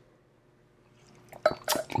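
Mouth sounds of a person tasting wine from a glass: after a near-silent pause, a brief wet sip and slurp about a second and a half in.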